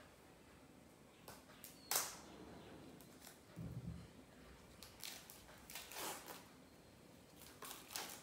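Faint, sparse snips and clicks of scissors cutting the wrapping on a boxed book set, the sharpest click about two seconds in. After that comes soft rustling as the box is handled.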